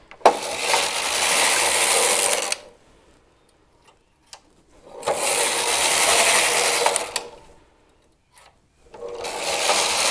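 Carriage of a Singer punch-card knitting machine being pushed across the needle bed to knit fair isle rows: three passes of about two seconds each, with short clicks in the pauses between them.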